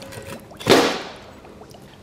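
A single short swishing scrape, about a third of a second long and coming about two-thirds of a second in, as the cast iron meter enclosure and the bucket of water are shifted on a metal trolley top.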